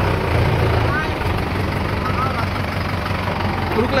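Tractor diesel engine running steadily, heard close up from the tractor itself; its low note eases a little about a second in.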